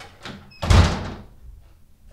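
A faint click, then a house door slamming shut once with a loud bang that dies away quickly.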